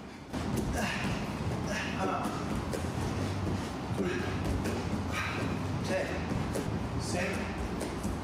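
A man's voice counting push-up repetitions at a steady pace, about one count a second, quieter than the talk around it.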